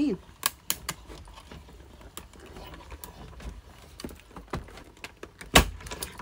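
Manual die-cutting machine (Stampin' Up Stamp and Cut and Emboss) feeding a cutting-plate sandwich with dies through its rollers: a low rumble with scattered clicks, and one loud thump near the end.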